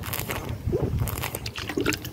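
A man drinking fizzy sparkling water from a squeezable plastic bottle: irregular gulps and swallows, with the liquid sloshing in the bottle.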